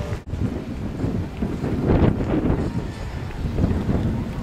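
Wind buffeting the microphone: a low rumbling noise that swells about two seconds in.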